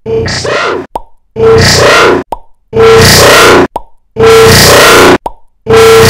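A woman's voice clip saying 'explode', looped about every second and a half with more copies layered on each repeat, so the five bursts grow louder and denser until the word is lost in a clipped, distorted wall of noise.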